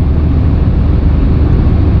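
Steady low rumble of road and engine noise inside a moving car's cabin at motorway speed.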